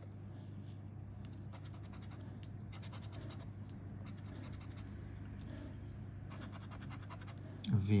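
Scratch-off lottery ticket's coating being scraped away in a continuous, faint rasping, with a low steady hum underneath.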